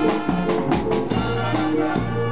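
Youth wind band playing: trumpets, trombones and saxophones over a drum kit. Drum strikes stand out in the first second, then the brass holds long notes.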